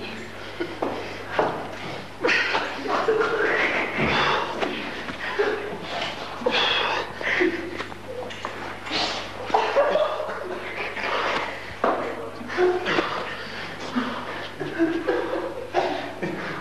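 A woman's nervous, uncontrollable fit of laughter in irregular breathy bursts, over a steady low hum.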